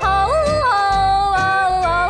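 A woman singing a country song, her voice leaping up and back down in pitch in a yodel-like break and then holding one long note, over a country backing track with bass and a steady beat.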